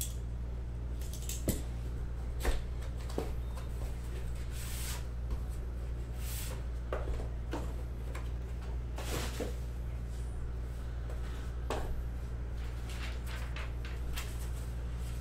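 A cardboard trading-card box being handled and opened, its lid lifted off: scattered light taps, clicks and brief scraping rustles of cardboard and paper. A steady low electrical hum runs under them.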